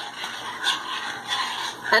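Pot of rice and yellow split peas bubbling at a rolling boil, with a few faint knocks from a spoon in the pot.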